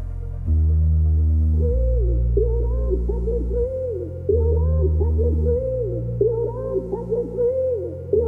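Melodic house music: a deep synth bass holding long notes that change every second or so, joined about a second and a half in by a warbling synth lead that bends up and down in pitch.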